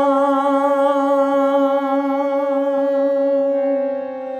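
Man singing a Bengali Shyama Sangeet devotional song, holding one long vowel on a single note with a gentle vibrato. The note ends near the end.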